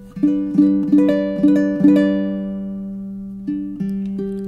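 Kala ukulele played fingerstyle: a quick run of single plucked notes, the last one left ringing and slowly fading, then two more plucks near the end.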